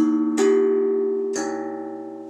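Handmade steel tongue drum, tuned to the key of the original Hang, struck by hand. Three notes sound, at the start, just under half a second in and about a second later, each ringing on and slowly fading under the next.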